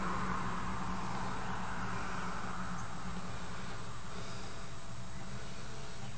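Steady ambient background noise with a faint low hum and no distinct sound events.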